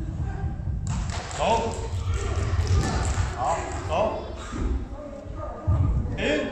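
A man's voice in a large hall, over low thuds and rustling noise.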